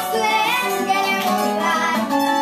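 Live acoustic music: a voice singing a melody over plucked and strummed acoustic guitar.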